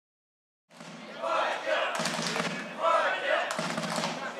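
Men shouting during a football match: loud calls ring out over open-air background noise. The sound starts abruptly after a moment of silence.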